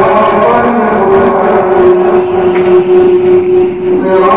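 A chanting voice holding one long steady note that ends abruptly.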